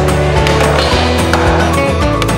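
Backing music, with a skateboard rolling on concrete and grinding a painted metal handrail underneath it.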